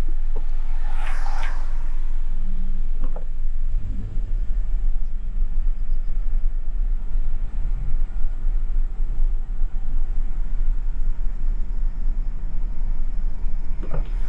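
Car driving on the road, heard from inside the cabin: a steady low rumble of engine and tyres that turns rougher and more uneven about three seconds in. A brief rushing hiss comes about a second in and again at the end.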